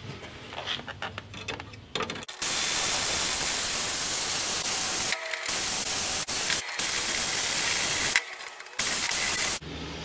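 Power drill with a one-eighth-inch bit drilling out a loose rivet in an A.L.I.C.E. pack frame. It runs steadily from about two seconds in, stopping briefly three times, with light handling before it starts.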